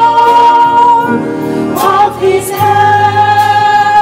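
Church choir singing gospel music with piano and drums. A long held note wavers with vibrato, then the voices move to a lower note about two seconds in.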